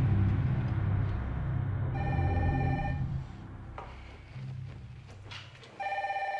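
A telephone ringing twice, each ring an electronic tone about a second long, the second coming near the end. Under the first ring a low rumble dies away.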